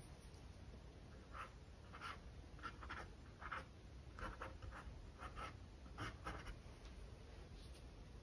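A small paintbrush dabbing acrylic paint onto a canvas: about a dozen faint short strokes, which stop about two-thirds of the way through.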